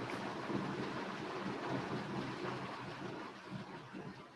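Steady rushing hiss of background noise on a video-call microphone, slowly fading away.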